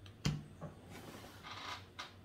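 Quiet handling and movement sounds from a person seated at a table: a sharp click just after the start, then a soft rustle lasting about a second.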